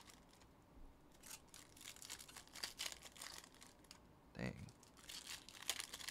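Faint crinkling and rustling of a foil trading-card pack wrapper and cards being handled, in short scattered crackles.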